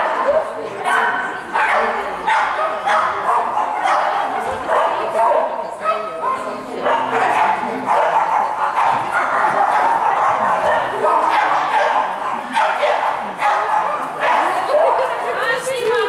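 Small terrier barking and yipping over and over, about one to two barks a second, as it runs an agility course with its handler.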